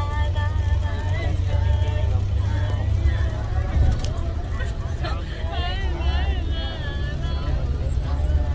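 Steady low rumble of a moving shuttle bus's engine and road noise heard inside the cabin, under the voices of passengers talking.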